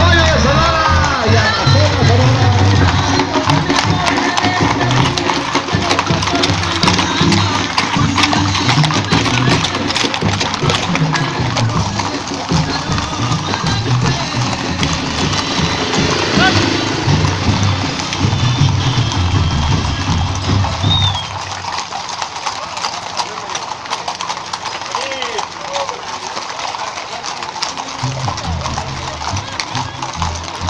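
Hooves of many horses clip-clopping at a walk on a paved street, mixed with loud music and voices; the music's bass drops away about two-thirds of the way through, leaving the hoofbeats and voices.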